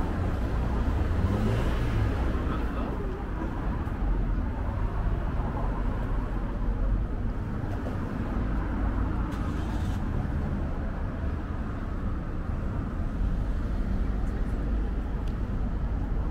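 Busy street ambience: steady car traffic running past with a low rumble, and indistinct voices of passers-by.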